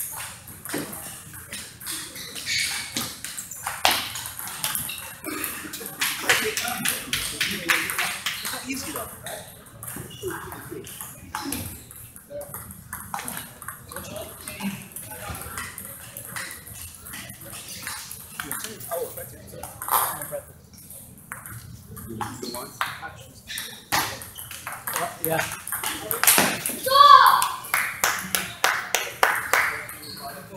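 Table tennis ball clicking back and forth off rubber paddles and the tabletop in rallies, in quick runs of sharp ticks with short gaps between points. Voices talk in the background, loudest near the end.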